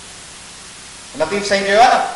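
A steady hiss during a pause in a man's speech over a microphone. His voice resumes a little over a second in.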